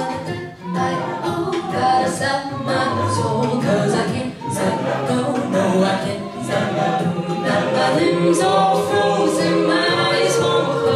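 A cappella group singing live through microphones: many voices layered in harmony with no instruments, and sharp, regular percussive sounds from the voices keeping the beat.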